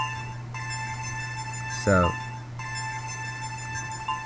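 Sustained sound-design ambience drone from a sound-effects library track: a steady chord of held high tones over a constant low hum, with two brief breaks.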